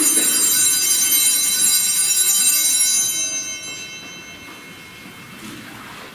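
Altar bells rung at the elevation of the chalice after the consecration: a cluster of small bells ringing for about three seconds, then fading out.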